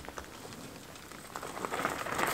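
Wheelbarrow wheel and footsteps crunching over a gravel path, a faint crackle that grows louder near the end as they come closer.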